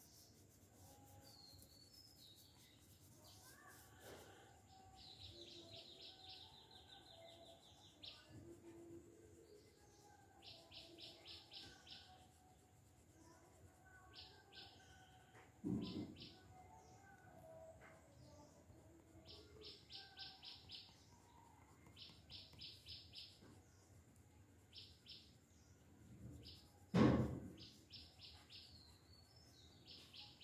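A small bird chirping in short, rapid high-pitched trills, about a second each and repeated many times, over faint coloured-pencil shading strokes on paper. Two dull thumps, one a little past halfway and a louder one near the end.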